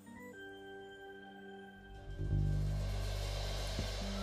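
Live band ending a song: a quiet held keyboard chord, then about two seconds in a loud low final chord with bass and electric guitar that rings on.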